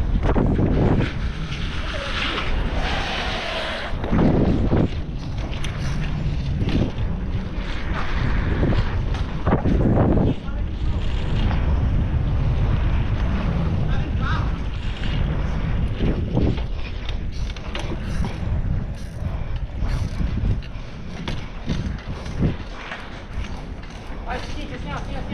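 Wind buffeting the microphone of a camera on a bicycle being ridden fast, with a steady low rumble and frequent knocks and rattles from the bike running over the road surface.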